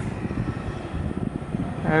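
Low, irregular outdoor rumble with no distinct single source, its energy lying mostly in the low range.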